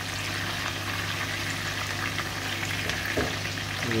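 Whole tilapia shallow-frying in hot oil in a pan, a steady sizzle on a medium flame as the fish finish cooking. A steady low hum runs underneath.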